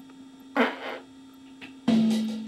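Recorded drum track played back over studio monitors: sparse drum hits with a ringing snare tone, one about half a second in, a light tap a little later and a louder hit near the end.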